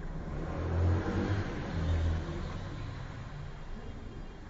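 Faint low engine-like rumble over background noise, swelling twice: about a second in and again about two seconds in.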